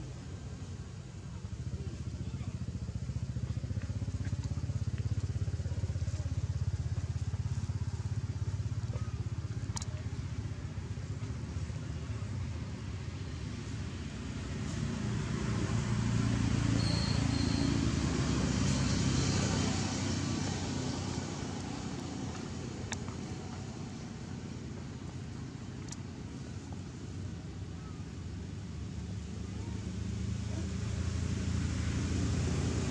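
Steady low rumble of motor traffic that grows louder for several seconds just past the middle, as a vehicle passes.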